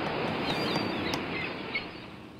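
Outdoor ambience: a steady rushing noise with a few short bird chirps, fading slightly near the end.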